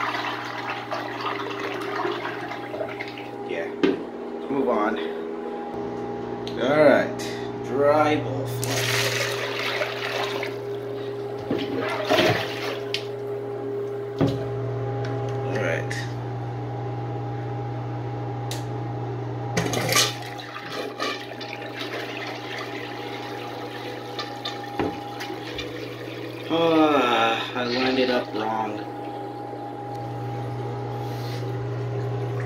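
A miniature toilet flushing, water swirling and draining in its bowl, over a steady hum.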